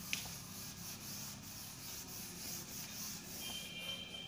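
A whiteboard being wiped clean with a hand-held duster: repeated soft rubbing strokes across the board.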